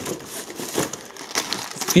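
Plastic packaging crinkling in irregular rustles as bagged packs of mini stick rockets are handled and lifted out of a cardboard box.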